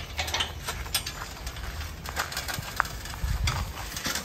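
Scattered light knocks and taps over a low rumble, with no regular rhythm: steps and handling close to a horse in a small pen with a metal gate panel.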